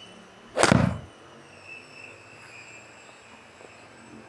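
A 6-iron striking a golf ball off a hitting mat: one sharp, loud strike about half a second in, with a brief low tail.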